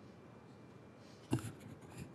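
Quiet room tone, then about a second and a half in a single sharp knock with a low boom on the podium microphone, followed by brief soft rustling and scraping: handling noise as the lectern and its microphone are touched.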